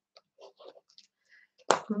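A few faint, short clicks and soft small sounds, then a woman's voice breaking in loudly near the end with "wow".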